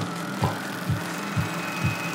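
Psytrance track in a stripped-back passage: a steady kick drum a little over two beats a second under a wash of noise, with a thin high tone coming in near the end.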